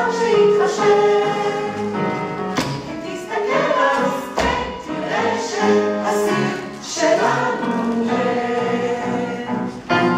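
A group of voices singing together in chorus over musical accompaniment, holding long notes.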